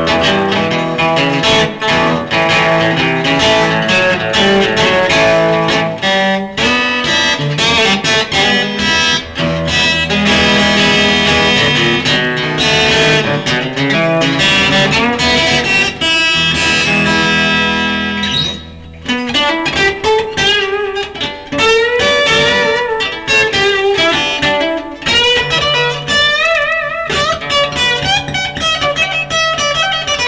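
Electric guitar played through a Bugera amplifier: a busy stream of chords and single-note runs, with a brief break about eighteen seconds in.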